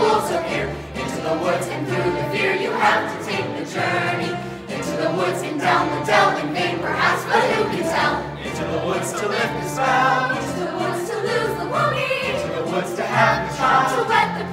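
A mixed youth chorus sings together over instrumental accompaniment in a musical-theatre ensemble number.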